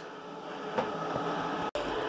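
Steady whooshing hum of a Christie digital cinema projector's cooling fans, growing a little louder, with a brief break in the sound near the end.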